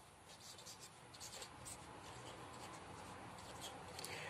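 Marker pen writing on paper: faint, short scratches of separate pen strokes.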